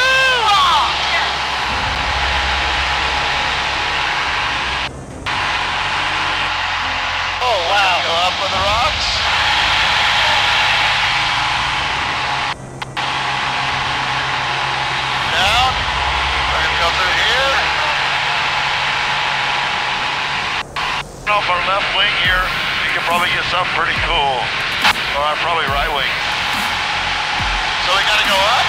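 Steady drone of an Edge aerobatic plane's engine and propeller heard from the cockpit in low inverted flight, with a few short wordless vocal exclamations. The sound drops out for a split second three times.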